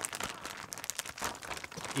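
Plastic zip-top bag crinkling in a dense run of crackles as gloved hands squeeze and knead a mashed-egg and mayonnaise filling inside it.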